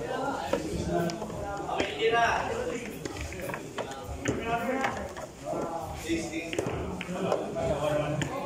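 People talking indistinctly, with a few light knocks.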